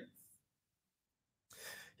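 Near silence, then about a second and a half in a short breath drawn in close to a handheld microphone.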